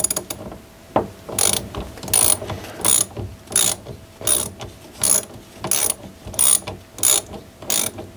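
Ratchet wrench with a 10 mm socket loosening the air-side nut at the foot of a mountain bike fork's lower leg: a burst of pawl clicks with each swing of the handle, about ten strokes evenly spaced well under a second apart.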